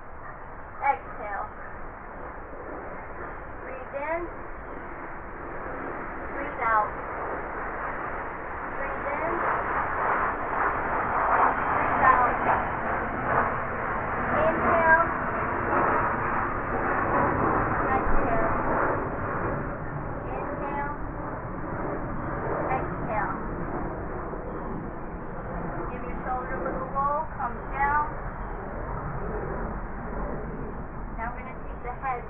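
Outdoor ambience: scattered short, high calls with rising and falling pitch over a steady background noise. The noise swells from about eight seconds in and eases off after about twenty seconds.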